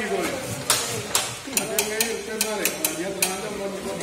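An irregular run of sharp clinks and knocks of metal cooking utensils, about ten of them, starting about a second in and coming thicker in the second half, over background chatter of men's voices.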